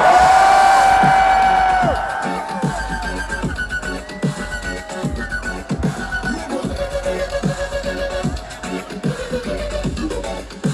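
Dubstep played loud over a festival sound system, heard from within the crowd. A loud held note ends about two seconds in, then comes choppy bass with repeated falling pitch swoops.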